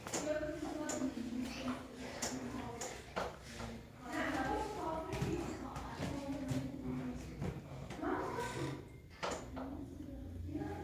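A young boy talking in short phrases, with a few light clicks and knocks in between.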